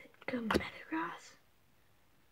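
A boy speaking a few words over the first second and a half.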